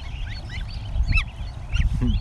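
A crowd of ducklings and goslings peeping in many short, high, downward-bending chirps, with one louder falling call about a second in. The gosling in hand is getting panicked. A low rumble runs underneath.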